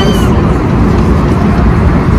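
Steady, loud rumble of a passenger jet's cabin noise (engines and airflow) heard from a seat inside the cabin.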